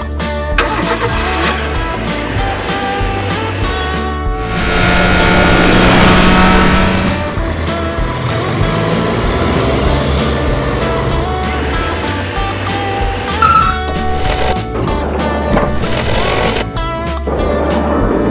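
Background music plays with a steady beat. A vehicle engine sound effect swells up loudly about four seconds in and dies away a few seconds later.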